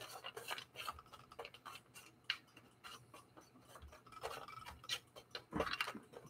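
Silicone spatula stirring and spreading cereal and nut party mix on a metal sheet pan: faint, scattered scrapes and clicks of the pieces shifting.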